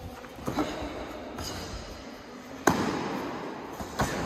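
Kicks and punches landing in kyokushin karate sparring: a thud about half a second in, then one sharp, loud smack about two-thirds of the way through that rings on in a short echo, and another hit right at the end.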